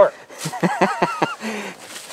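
A man laughing: a quick run of short chuckles, starting about half a second in.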